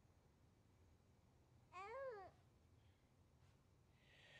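Near silence, broken about two seconds in by one short, faint whimper from a newborn baby, rising and then falling in pitch.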